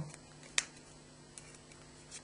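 Small slip of paper being folded by hand, with one sharp crackle of a crease about half a second in and a fainter tick later.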